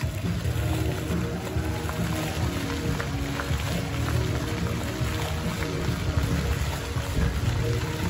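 Music played for a dancing water-fountain show, over the rush and splash of the fountain's jets.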